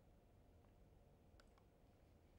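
Near silence: faint room tone with a low hum, and a few faint, brief clicks about half a second and about one and a half seconds in.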